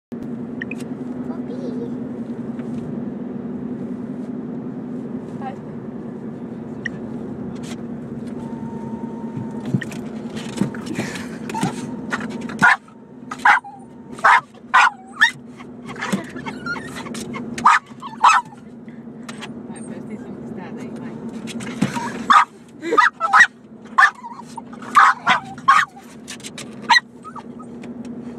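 A Boston terrier barking in two runs of short, sharp barks, the first about halfway through and the second near the end, over the steady drone of a car cabin on the move.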